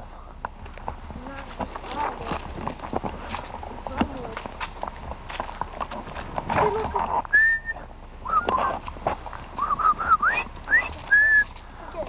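Footsteps crunching along a gravel and leaf-covered trail, then from about six and a half seconds in a person whistling a short tune of clear high notes and rising slides, a hiking song.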